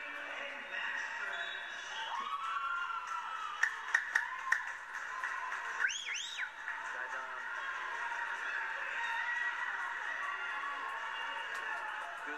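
Gymnasium crowd at a wrestling tournament, heard as playback through a television speaker: a steady hubbub of many voices with a few raised shouts and a handful of sharp claps or knocks about four seconds in.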